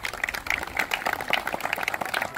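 Audience applauding: many people clapping in a dense, irregular patter.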